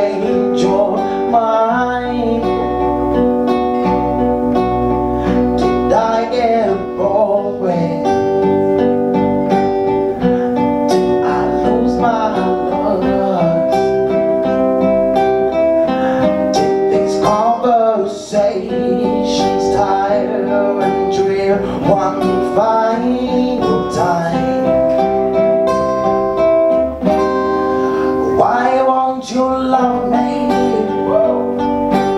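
Live band playing: strummed acoustic guitars over an electric bass guitar, with a male singer's voice rising over it at times.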